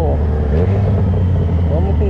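Yamaha XJ6's inline-four engine running at low revs as the motorcycle rolls slowly and slows down: a steady low drone.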